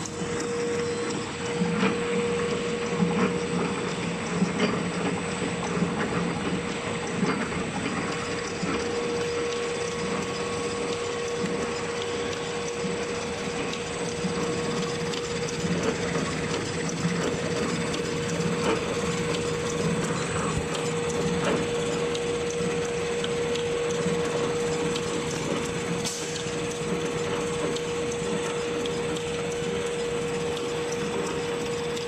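L-fold dispenser napkin machine with two-colour printing running steadily: a constant hum under a dense clatter of small ticks from its rollers and folding parts.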